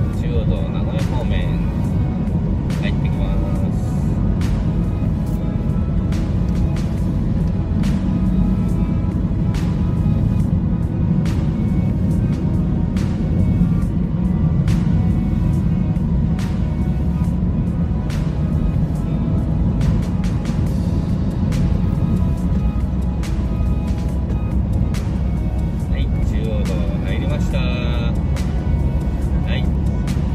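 Steady low road and engine noise inside a car cruising on an expressway, with music playing over it.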